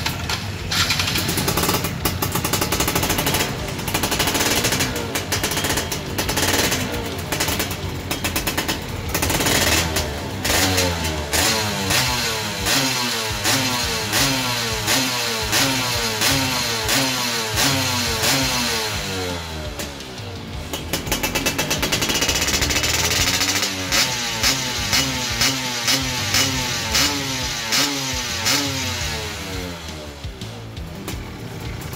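Yamaha F1ZR's ported two-stroke single-cylinder engine revved in neutral: held high at first, then the throttle blipped again and again, the revs rising and falling a little more often than once a second, with a brief drop to lower revs about two-thirds of the way through.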